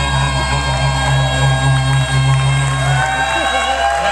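Live band music with long held low bass notes. The low notes stop about three seconds in, and a voice comes in over the remaining music.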